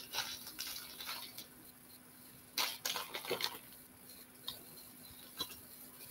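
Faint, scattered small clicks and rustles of tiny beading findings, a calotte and crimp beads, being picked out and handled by hand.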